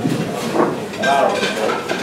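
Indistinct voices talking in a room, quieter than the amplified speech on either side.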